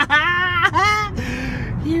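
A corgi whining in drawn-out, pitched, bleat-like cries of excitement over a treat, with a man laughing about a second in.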